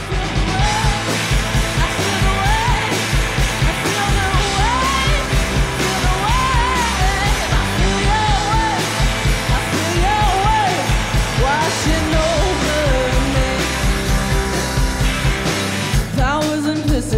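Rock band playing live: a woman's lead vocal over electric guitars, bass and a steady drum beat.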